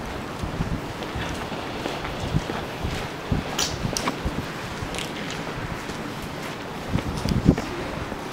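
Wind buffeting the microphone, with footsteps on concrete and a few scattered clicks; a louder buffet comes near the end.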